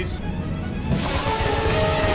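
Film soundtrack: orchestral score with held notes, joined about a second in by a loud rushing noise of hovercraft sound effects as the ship races through the tunnel.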